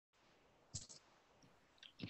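Near silence broken by a few faint clicks, two of them close together under a second in.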